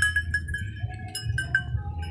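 Small bells on a flock of Dorper sheep tinkling in short, irregular pings as the animals feed, over a low rumble.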